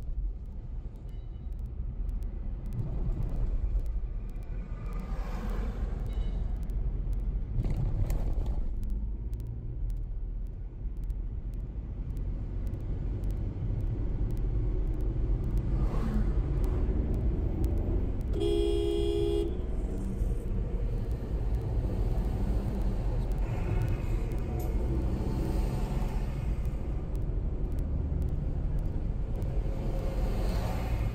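Steady low rumble of road and engine noise heard from inside a moving car on a highway. One vehicle horn toot, about a second long, sounds roughly two-thirds of the way through.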